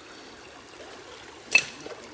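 Water washing gently across concentrates in a plastic gold pan as it is tilted, a faint trickle. One sharp click about one and a half seconds in.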